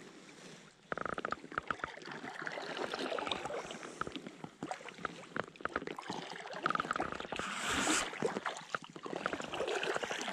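Carbon-shaft paddle dipping into calm lake water beside an inflatable packraft: splashing and dripping from the blades, starting about a second in and rising and falling with the strokes.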